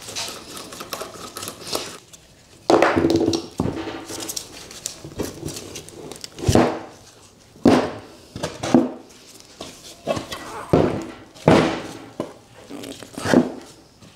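Heavy metal parts of a Vevor milling vice clunking and knocking as they are handled and set down on a workbench during dismantling: a string of about eight separate knocks.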